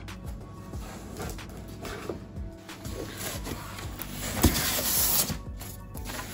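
Background music over the rustling, scraping and light knocks of a cardboard box being opened by hand, with a louder scrape of cardboard or packing about four and a half seconds in.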